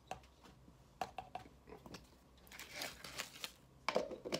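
Pre-workout powder being dumped in, with the plastic tub and scoop being handled: a few light clicks and knocks, a rustling hiss of about a second midway through, and a sharper knock near the end.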